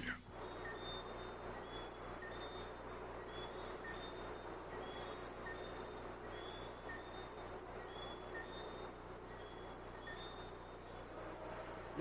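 Faint crickets chirping in a steady, fast pulse, with a second, fainter chirp repeating about once a second.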